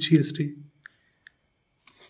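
A man speaking Hindi, trailing off about half a second in. Then two faint, short clicks about half a second apart, and near silence.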